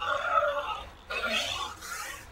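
Two rough, guttural vocal grunts from a person, each under a second long, about a second apart.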